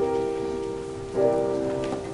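Piano chords: one is struck at the start and another about a second later, and each rings on and slowly fades.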